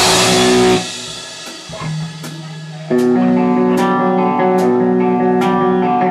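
Live rock band with electric guitar and drums. The loud full-band playing breaks off about a second in, leaving a held note ringing quietly. About three seconds in, loud guitar chords come back in, with a sharp drum hit about every 0.8 seconds.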